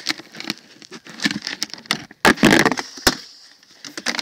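Handling of a plastic tub of leftover biochar, the dry charcoal bits rattling and scraping inside it: a run of clicks and crackles, a louder scraping rush about two and a half seconds in, and a sharp knock just after three seconds.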